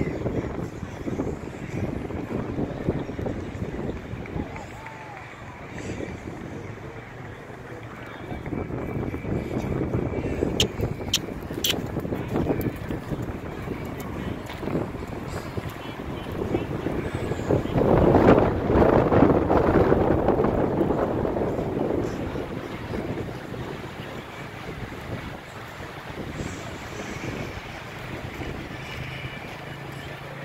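Gusty wind buffeting the microphone over faint, indistinct voices in the distance. The wind swells loudest for a few seconds past the middle.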